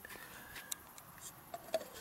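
Faint, scattered clicks and handling noise over a quiet background, as the camera is moved by hand.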